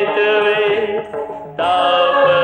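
Devotional chanting sung in long held notes. The phrase fades away a little after a second in, and a new chanted phrase comes in sharply near the end.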